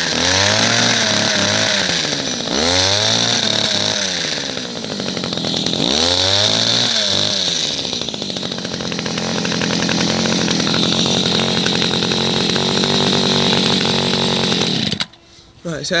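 Two-stroke petrol hedge cutter engine running, revved up and back down three times on the throttle, then held at a steadier, lower speed for several seconds before it stops suddenly near the end.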